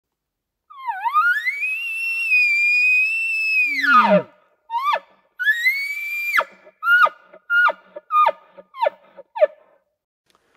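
Bull elk bugling: a long high whistle that dips, rises and holds for about three seconds, then breaks down with a low grunt under it. A shorter second bugle follows, then a run of about six short descending chuckles.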